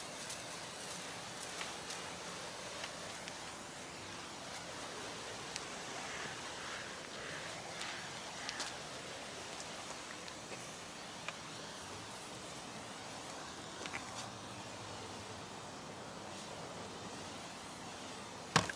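Hand-pumped 6-litre pressure sprayer misting traffic film remover through its wand onto a car's bodywork: a faint, steady spray hiss with a few light ticks.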